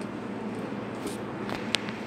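Steady running hum of a laser engraving machine and its ancillary units (water chiller, air pump), with a few light clicks about a second in and near the end.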